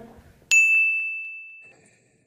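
A single bell-like ding, struck sharply about half a second in and ringing as one high tone that fades away over about a second.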